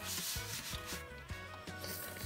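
Handling noise: a rubbing, scraping hiss as the camera is moved around the model, loudest in the first second.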